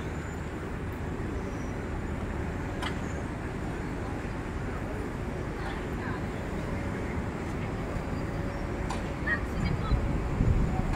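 Dockside ambience beside a berthed passenger ship: a steady low rumble with faint, indistinct voices of people and a few faint clicks, a little louder near the end.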